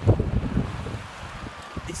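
Wind buffeting the microphone in uneven gusts, a low rumble that is strongest just after the start.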